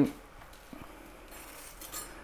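Faint sounds of a chef's knife cutting a red pepper on a chopping board: a light tap of the blade under a second in, then soft slicing.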